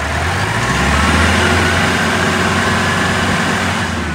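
Open Jeep's engine run up in gear, swelling and then holding steady while the vehicle stays put. The drive has gone completely free, which the owner puts down to a failed clutch plate.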